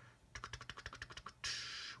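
Rapid light plastic clicks from a styrene model-kit sprue being handled and turned over in the hands, about ten a second for roughly a second. A short soft hiss follows near the end.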